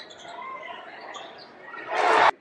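Basketball shoes squeaking on a hardwood court as short chirping squeals, over faint arena noise; a loud rush of noise swells up right at the end and cuts off suddenly.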